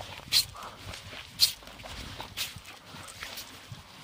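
Footsteps on a paved pavement, about one step a second, each a short sharp scuff. A brief laugh comes at the start.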